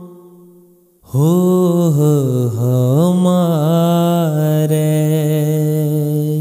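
Devotional shabad singing. The sound fades almost to silence in the first second. At about a second in, a voice comes back with a wordless, wavering held melody, then settles on a steady held note for the last couple of seconds.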